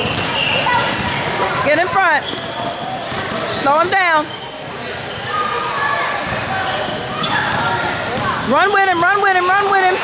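Basketball shoes squeaking on a gym court floor: short squeals about two seconds in and again around four seconds, then a quick run of squeaks near the end as players move, with a ball bouncing and voices echoing in the hall.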